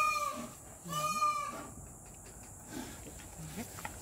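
Two short, pitched animal calls, each rising and falling, about a second apart near the start, then quieter background with faint scattered sounds.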